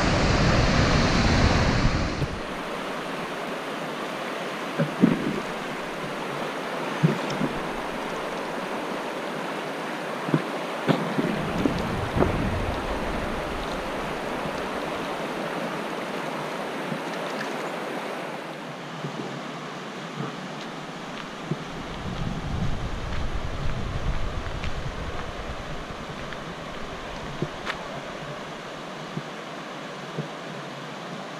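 Rushing water: a louder, steady roar of a waterfall for the first two seconds, then the steadier rush of a fast-flowing river. Wind knocks on the microphone a few times.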